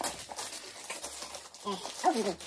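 Plastic food packaging crinkling and rustling as it is handled, with a short voice sound near the end.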